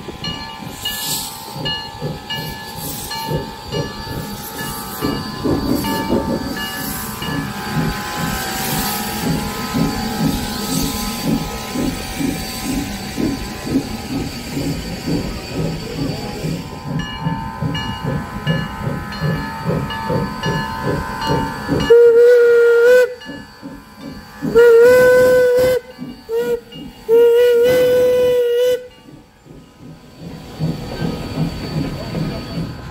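Santa Cruz Portland Cement No. 2 steam locomotive chuffing in a steady rhythm as it pulls its train past, the cars rolling on the rails. About two-thirds in, its steam whistle sounds four loud blasts, long, long, short, long: the grade-crossing signal.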